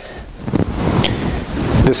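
A rushing, wind-like noise on a lapel microphone as the man shifts position. His voice resumes right at the end.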